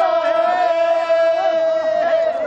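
Group of voices chanting a folk work song: one long held note with other voices rising and falling beneath it.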